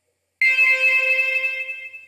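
A single C5 note from Sonic Pi's Zawa software synth, run through its echo effect. It starts suddenly about half a second in and fades away over about a second and a half.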